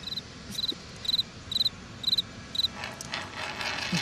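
Crickets chirping, about two short pulsed chirps a second, stopping a little before the end: the stock 'crickets' sound of an awkward silence after an unanswered question.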